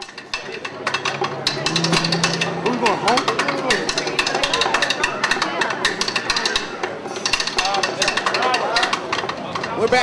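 A marching drumline of snare and tenor drums playing fast stick patterns with rapid, closely packed hits, and voices mixed in underneath.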